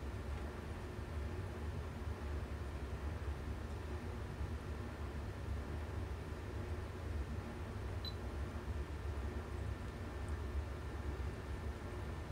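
Steady low electrical hum of running bench test equipment, with faint steady higher tones and one tiny tick about 8 s in.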